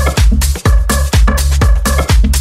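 Electronic dance music from a techno DJ mix: a steady kick drum about two beats a second, with a repeating synth pattern over it.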